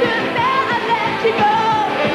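Live pop-rock band playing with singing: held, wavering sung notes over a steady drum beat.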